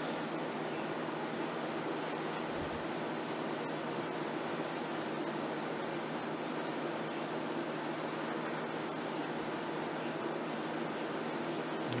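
Steady room noise: a constant, even hiss with a faint low hum beneath it, unchanging throughout and with no distinct events.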